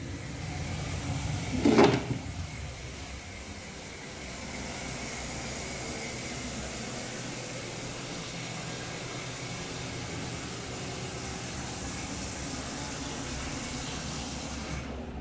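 A single sharp knock about two seconds in, then from about four seconds in a steady hiss that keeps going.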